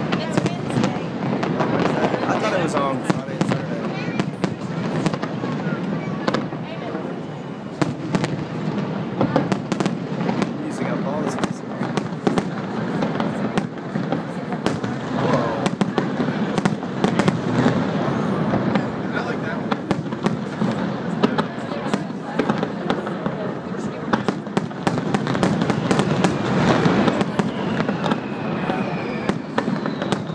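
Fireworks display: an unbroken run of irregular bangs and crackles as aerial shells burst, one after another with no pause.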